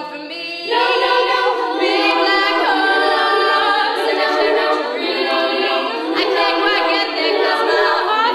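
Female a cappella vocal group singing in close harmony, a lead voice over massed backing vocals with no instruments. The sound thins briefly at the start, then the full group comes back in under a second in.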